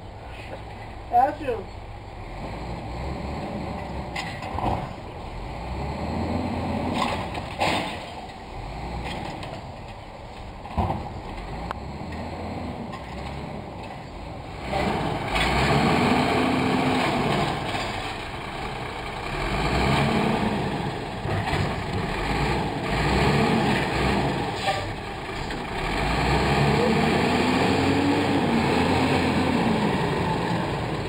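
Garbage truck's diesel engine running and revving up and down again and again, getting louder about halfway through as the truck draws near. A few short sharp knocks or hisses are heard in the first half.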